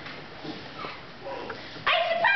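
Quiet theatre room sound with faint scattered vocal bits, then just before the end a sudden loud, high, yelping vocal sound from a person.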